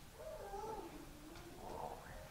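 A young child's voice making one drawn-out, wavering whine that sinks in pitch and then rises again.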